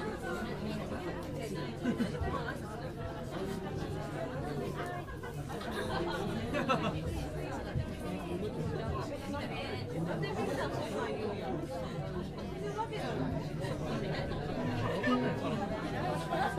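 Overlapping chatter of an audience talking among themselves in a small room, with no music playing.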